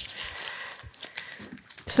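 Thin plastic carrier sheet and tape crinkling as they are peeled apart by hand: a soft rustling hiss that fades out over about a second and a half.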